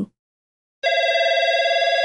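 A telephone ringing for an incoming call: one ring, a steady, rapidly warbling tone that starts a little under a second in.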